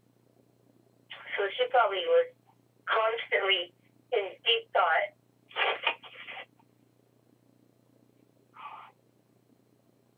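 Speech heard over a telephone line, thin-sounding, in a few short phrases with pauses, over a faint steady hum.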